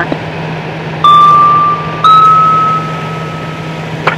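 Fire dispatch two-tone page heard through scanner radio audio. A steady tone sounds for about a second, then a slightly higher tone is held for about two seconds and fades, over radio hiss and a steady low hum.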